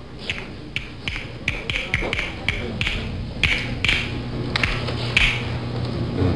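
A man imitating castanets with his fingers: a run of sharp, hollow clicks, two to four a second and unevenly spaced, thinning out toward the end. A low steady hum sits under the clicks in the second half.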